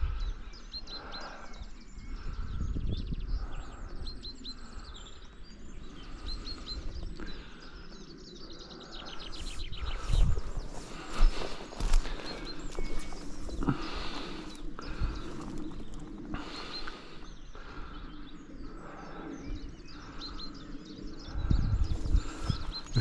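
Outdoor wind noise rumbling on the microphone, rising and falling in gusts, with small birds chirping in the background, mostly in the first few seconds. A few short, louder noises come around the middle.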